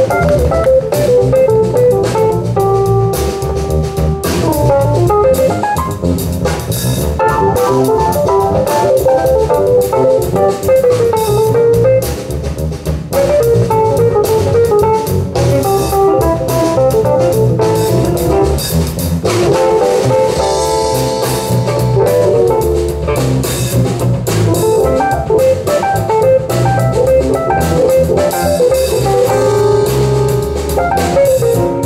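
Live jazz fusion band playing an instrumental piece, with guitar, keyboard, bass and drum kit.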